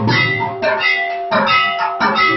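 Temple aarti music: a dense, steady ringing of bells and metal percussion, with a heavy beat about every two-thirds of a second.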